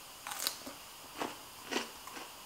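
Crunching bites and chewing of a pickle slice: a few short, crisp crunches spaced through the two seconds.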